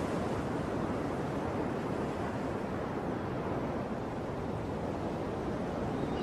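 Ocean surf: waves breaking in a steady wash of noise.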